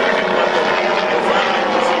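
A steady mechanical drone made of several held tones, with voices over it.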